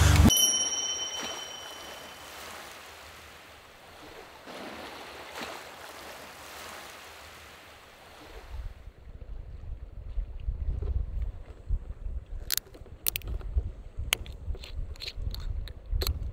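Wind buffeting the microphone by the sea, a gusting low rumble, with several sharp clicks near the end. Before it, a brief high chime and a soft steady hiss.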